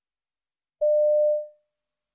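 A single steady electronic beep, a little over half a second long and fading at its tail, the tone that signals the start of a listening-test extract.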